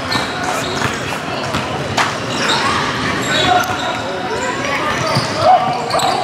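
Basketball dribbled on a hardwood gym floor, a few bounces with the sharpest about two seconds in, under steady talk from players and onlookers echoing in a large hall.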